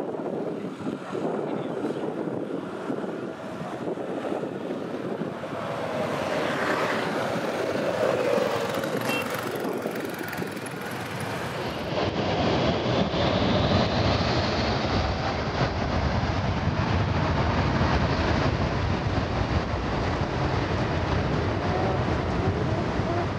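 Boeing 737 jet engines running up to takeoff thrust, a loud steady roar of jet blast. From about halfway on the roar is louder and deeper, with a whine rising in pitch.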